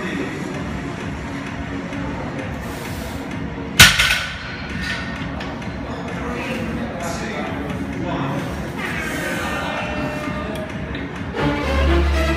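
Gym ambience of background music and indistinct voices, with one sharp, loud bang about four seconds in. Near the end, louder music with a deep bass comes in.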